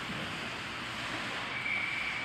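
Steady wash of hockey-rink noise during play: skates and sticks on the ice in a large, echoing arena. A faint thin high tone comes in during the last half-second.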